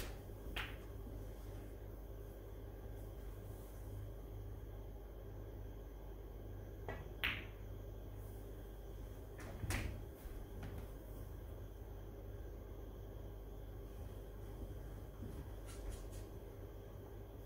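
Snooker cue and balls: a handful of separate sharp clicks and knocks of cue tip on cue ball and ball on ball, the loudest about seven and ten seconds in, as a red is potted. A faint steady hum runs underneath.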